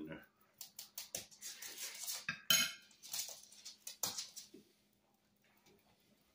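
Metal fork clinking and scraping against a baking dish of lasagna: a quick run of sharp clicks and scrapes that stops about four and a half seconds in.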